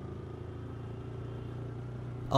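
Motorcycle engine running steadily while riding, a low, even hum with no change in speed.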